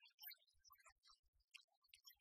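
Near silence, with only faint scattered ticks.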